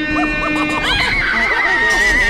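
A person screaming: a held cry that jumps to a high, wavering shriek about a second in and carries on past the end.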